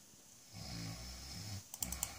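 A low, rough sound like a breath or grunt for about a second, then a quick run of sharp computer-mouse clicks near the end, the loudest sounds here.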